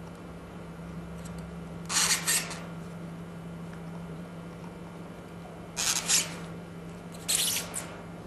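Plastic screw caps being twisted onto 50 ml plastic centrifuge tubes: three short raspy scrapes of plastic thread on thread, about two seconds in, about six seconds in and again a second and a half later, over a steady low hum.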